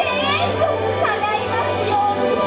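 Parade music playing, with children's high voices calling out in the crowd just after the start and again about a second in.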